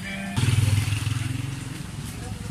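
Motorcycle engine running close by. It comes in suddenly about a third of a second in, as the loudest sound, and fades over the next second and a half.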